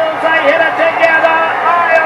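Speech: a race caller's excited commentary on the finish of a thoroughbred horse race.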